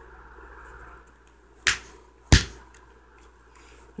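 Two sharp clicks or knocks about two-thirds of a second apart, the second louder, from handling a phone and its charger.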